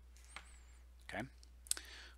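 Two sharp clicks at a computer, a little over a second apart, the second one louder, in an otherwise quiet room.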